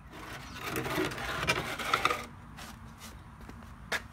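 Scraping and rubbing as a hand works the oil drain hose off the drain-valve nipple of a mower engine, lasting about two seconds. A single sharp click follows near the end.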